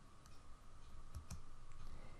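Quiet room tone with a faint steady hum and a few faint clicks.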